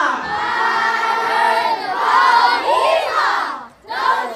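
A group of children singing a song together, many voices overlapping, with a sudden break near the end.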